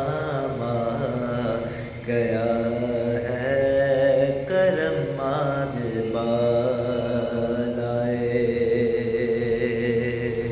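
A solo male voice reciting a naat, drawing out long, wavering held notes with melismatic runs. There is a short pause for breath about two seconds in.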